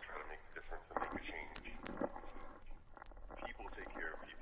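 Quiet, indistinct speech, too low and muffled to make out, with faint clicks scattered through it.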